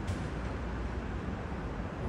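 Steady low background rumble of outdoor noise, even throughout with no distinct events.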